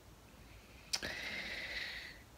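A soft mouth click as the lips part, then about a second of audible in-breath with a slight whistle, drawn just before speaking.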